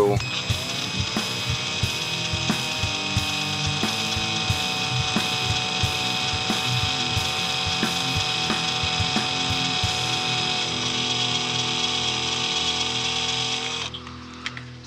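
Cordless drill running steadily with a high whine, slowly boring a small hole into the end of a plastic action-figure rifle barrel with a precision bit. It starts just after the beginning and stops shortly before the end.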